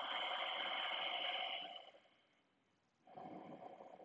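Deep, audible yogic (ujjayi) breathing through a narrowed throat: one long breath for the first couple of seconds, then a shorter one beginning about three seconds in.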